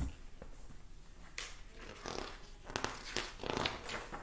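Faint rustling and handling noises close by, with a cluster of soft scratchy sounds about three seconds in.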